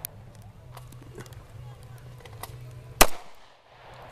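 A single shot from a Ruger 9mm pistol about three seconds in: a sharp, loud crack with a short echo trailing off.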